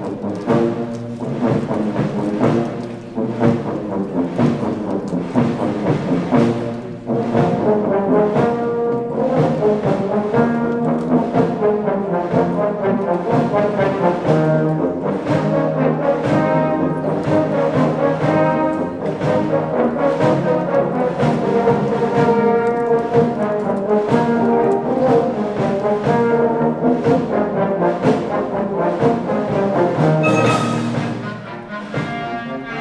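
A concert wind band playing a piece live, with a steady beat. Flutes are playing at first, and euphoniums and saxophones later.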